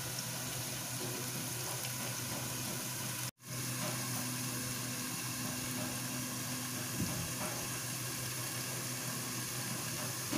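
Food cooking in a covered frying pan, sizzling low and steady with a constant hum underneath. The sound cuts out for a split second about a third of the way in.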